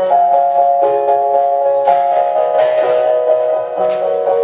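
Instrumental accompaniment music with sustained notes that change every second or so, played as a backing track for a violin solo.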